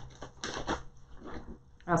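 Faint rustling and a few soft clicks of a baby wipe being dug out of its package.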